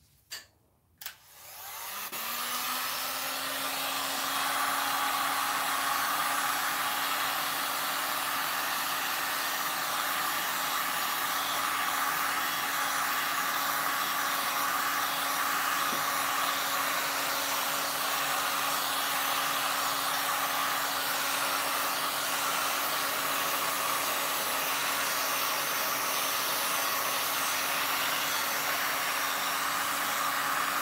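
Handheld heat gun switched on with a click about a second in. It builds up to full speed over the next few seconds, then runs steadily as a rushing blow with a low hum, heating freshly poured resin.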